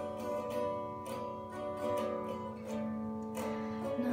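Instrumental music: a guitar playing sustained chords, with a new stroke about every half second and no voice.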